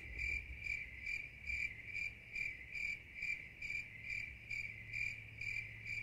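A cricket chirping in an even, steady rhythm of about two to three chirps a second, each chirp a short high-pitched note.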